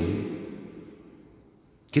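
A pause in a man's speech: his last words die away slowly in the room's reverberation to near silence, and he begins speaking again at the very end.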